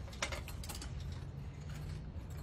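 A puppy mouthing and tugging at a person's hair, heard as scattered short clicks and rustles over a low steady hum.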